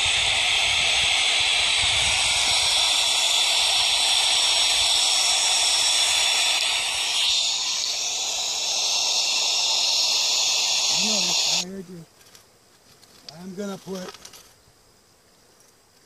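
White noise played from a portable speaker: a loud, steady hiss that cuts off suddenly about twelve seconds in.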